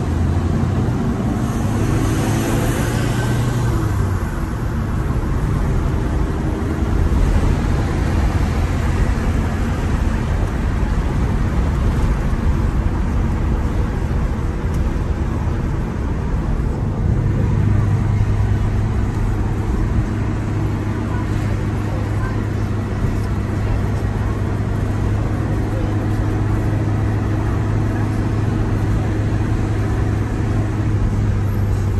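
Engine drone and tyre noise of a moving taxi, heard inside its cabin: a steady low hum that grows stronger about seventeen seconds in.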